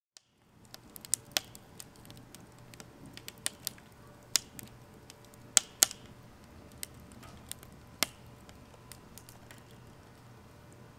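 Firewood burning in a stainless-steel Solo Stove Bonfire fire pit, crackling with irregular sharp pops that begin about half a second in. The loudest pair of pops comes a little past the middle.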